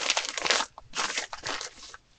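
Plastic wrapping crinkling in two bursts as a plastic-wrapped shampoo bar is handled and pressed into a small silicone case.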